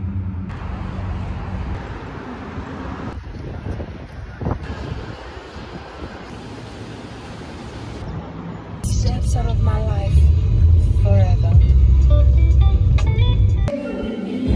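Car and traffic noise, a steady hiss with a low hum, broken by several sudden cuts between clips. From about nine seconds in a much louder low rumble sets in, with a voice or singing over it, until it cuts off just before the end.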